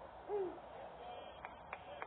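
A person's short hooting call, rising and then falling in pitch, followed by a few faint sharp clicks.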